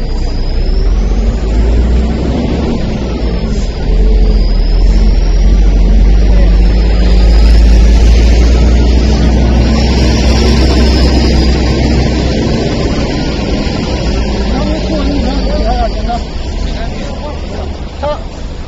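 Low rumble of a car engine running close by, with voices over it and a faint high whine that slowly rises and falls.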